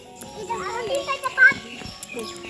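Young children's voices chattering and calling, loudest about one and a half seconds in, over faint background music with long held notes.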